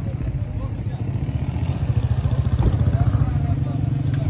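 An engine running at idle: a steady low rumble made of fast, even pulses, with faint voices in the background.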